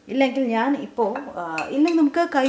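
Metal spoon clinking a few times against a ceramic bowl of raw eggs as it is picked up and moved in the eggs, under a woman's voice.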